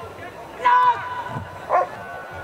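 German Shepherd Dog barking twice: a loud, drawn-out bark just over half a second in and a short one near the end.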